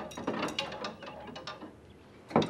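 Clothes hangers clicking and scraping along a wardrobe rail as garments are pushed aside one by one; the clicks come irregularly and thin out near the end.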